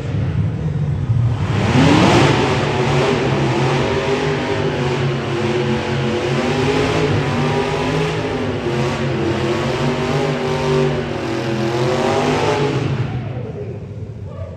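Hot rod's engine revving hard during a burnout while its rear tires spin. The revs climb steeply about a second and a half in, then stay high and waver up and down for about ten seconds before dropping away near the end.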